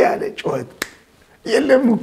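A man talking, with one sharp click a little under a second in, followed by a short pause before he talks on.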